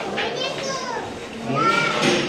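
Background chatter of a crowd with children's high-pitched voices calling out over it, twice rising and falling in pitch.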